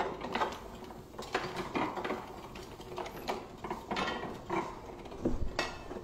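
Old platen letterpress running, its moving parts clacking and clicking in a repeating cycle, often two clacks close together.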